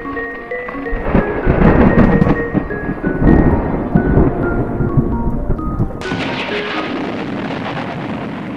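A short melody of chiming, mallet-like notes over heavy rolling thunder. About six seconds in a steady hiss comes in suddenly and carries on to the end.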